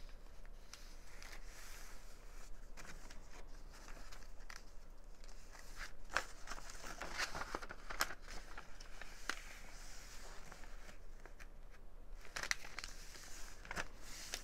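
Paper rustling and crinkling as sheets of old ledger and catalogue paper are folded, slid and pressed flat into a paper envelope, with scattered small crisp clicks, busiest about halfway through.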